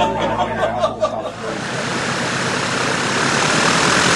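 A high-wing light aircraft's piston engine and propeller running close by, heard as a loud, steady rushing noise that sets in about a second and a half in.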